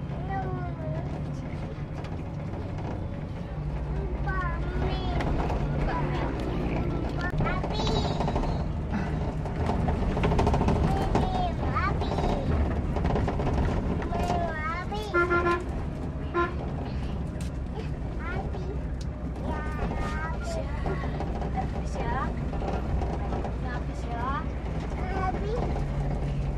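Steady low drone of a double-decker coach's engine and running gear heard from inside the passenger cabin, with indistinct voices over it. A short horn toot sounds about fifteen seconds in.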